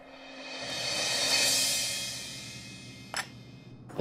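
Background-score transition effect: a cymbal-like swell that rises to a peak about a second and a half in and fades away, followed by a short click near the end.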